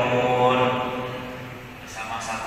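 Islamic devotional chanting: a voice holding a long melodic, gliding line that tapers off near the end.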